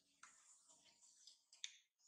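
Very quiet, with faint soft smacks and one sharp click near the end.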